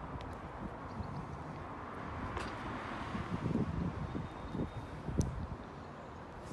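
Outdoor ambience with wind rumbling unevenly on the microphone, a soft hiss that swells briefly near the middle, and a single sharp click about five seconds in.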